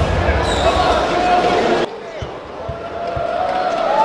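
Arena crowd noise with voices, then, after a sudden drop in level, a basketball bounced three times on a hardwood court, about two bounces a second, as a free-throw shooter readies his shot.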